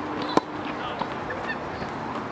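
A tennis ball struck once by a racket: a single sharp crack about a third of a second in, over a faint steady hum and a few short high-pitched squeaks.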